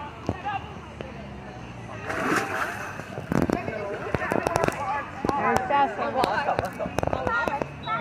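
Children's voices and shouts around a swimming pool, with a burst of splashing water about two seconds in and a few sharp knocks soon after.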